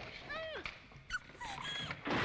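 A woman whimpering in pain: several short, high cries, each bending up and down in pitch.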